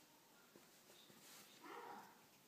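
Near silence: quiet room tone, with one brief faint sound near the end.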